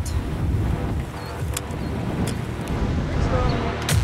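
Strong gusty wind buffeting the microphone as a thunderstorm's rear-flank surge arrives, with a few sharp clicks, the loudest near the end.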